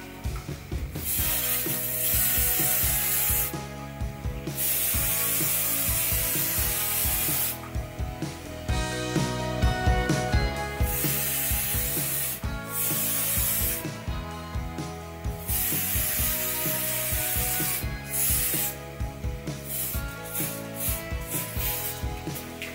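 Aerosol hairspray can spraying in a series of hissing bursts, each one to three seconds long, with short pauses between, misted onto a toy pony's curled hair.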